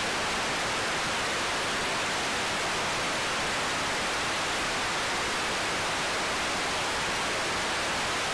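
Television static sound effect: a steady, even hiss of white noise.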